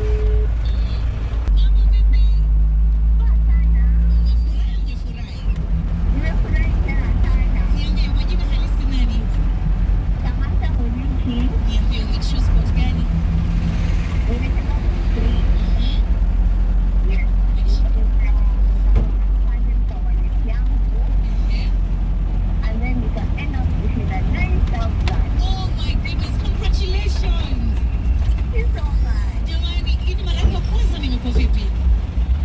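Steady low rumble of a moving car's engine and road noise, heard from inside the vehicle, with voices talking on and off over it.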